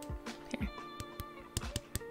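A fingernail tapping several times on a dried one-coat chrome polish, short light clicks at an uneven pace, over steady background music.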